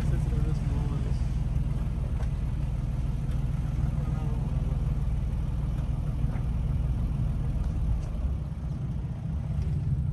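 Safari game-drive vehicle's engine idling: a steady low hum.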